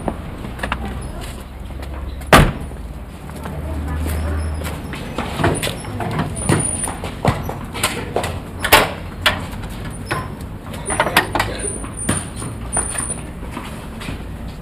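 A car door slams shut about two seconds in, over a low rumble. Later come scattered clunks and clicks, the loudest a little past halfway, as the car's front lid is released and lifted.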